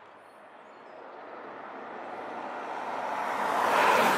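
A car approaching on a tarmac road: tyre and engine noise growing steadily louder until it passes close by near the end.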